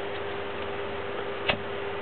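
Microwave oven: a steady electrical hum with one sharp click about one and a half seconds in.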